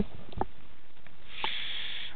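A man drawing a breath through the nose, a short sniff in the last half second, with a couple of faint clicks earlier.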